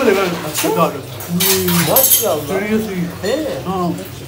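Voices talking, with dishes and cutlery clinking, several clinks around the middle.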